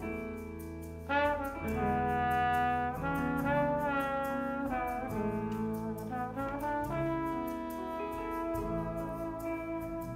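Solo trombone playing a jazz ballad melody in long held notes over big band accompaniment, coming in strongly about a second in.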